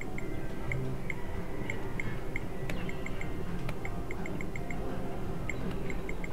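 Video poker machine sounding runs of short, high electronic beeps in quick groups of three to five as cards are dealt and drawn, with a couple of sharp clicks near the middle, over a steady low background din.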